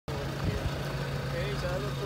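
Steady low hum of a car engine idling, with faint voices of people in the background.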